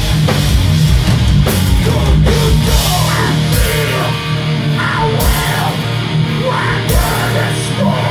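Hardcore punk band playing live and loud: distorted electric guitars, bass and a pounding drum kit with crashing cymbals, under a vocalist's shouted vocals.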